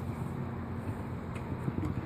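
Steady low background hum with light rustling as a cotton rag is wiped along a window sill, with a few faint ticks in the second half.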